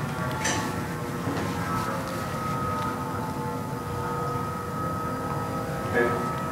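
Steady whir of a small electric fan with a thin, level whine, typical of the MindFlex game's ball-lifting fan running, heard as video playback over loudspeakers.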